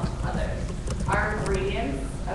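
A woman talking, with a few knocks of footsteps on a hard floor as she walks.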